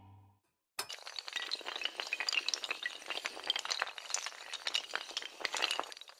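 Animation sound effect of many small hard tiles clattering and tinkling as they topple: a dense, glassy rattle of clicks that starts suddenly about a second in and keeps going.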